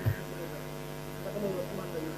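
Steady electrical hum from the microphone and recording chain, with a brief low thump right at the start and faint voices murmuring in the background around the middle.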